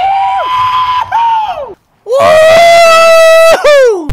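A man's voice yelling in long, high-pitched held notes with no words: two wails in the first second and a half, a short silence, then one loud, long held yell that glides down at the end.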